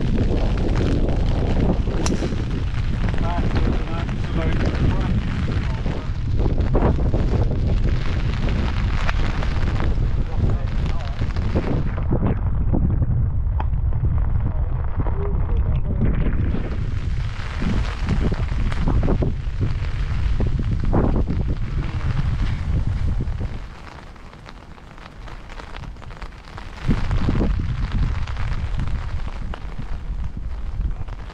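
Wind buffeting the microphone, a loud constant low rumble that drops away for a few seconds near the end.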